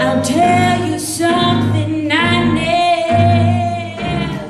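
A woman singing a jazz tune live with a small New Orleans-style jazz band, holding some notes with vibrato over the band's steady accompaniment.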